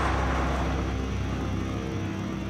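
Car engine with a low, steady rumble as the car rolls to a stop, mixed with a brief rushing noise at the start, under soundtrack music.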